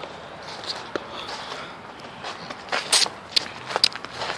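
Footsteps crunching on a thin layer of snow and dry leaves, with a few sharper crunches in the last second or so.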